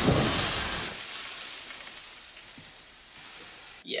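Fire extinguisher spraying onto a stove-top pan fire: a loud hissing rush that fades away over about three seconds, then cuts off suddenly near the end.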